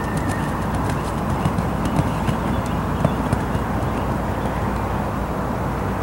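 Horse cantering on sand arena footing, its hoofbeats soft and muffled over a steady background rush of outdoor noise.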